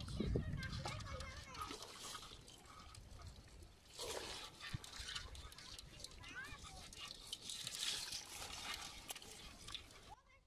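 Hands splashing lightly in shallow muddy water, with faint voices in the background.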